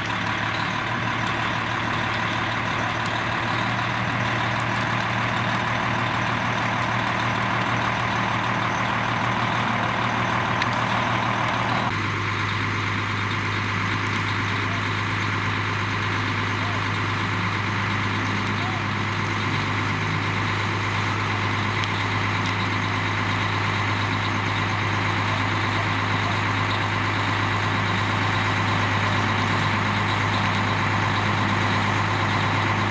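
Fire engine running steadily, a constant low drone from its engine. The sound changes abruptly about twelve seconds in.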